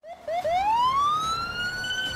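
Police car siren: three short rising yelps, then one long rising wail that levels off near the end.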